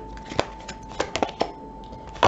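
Tarot cards being handled and drawn from the deck: about half a dozen short sharp card clicks and snaps in the first second and a half, over a faint steady high tone.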